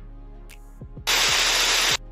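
Faint background music, then about a second in a loud burst of static-like hiss that switches on and off abruptly and lasts just under a second.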